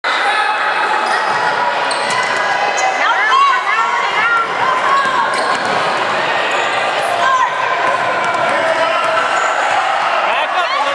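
Sneakers squeaking on a hardwood basketball court in quick runs of short, high squeaks a few seconds in and again later, with a basketball bouncing on the floor as it is dribbled. Spectators talk and shout underneath.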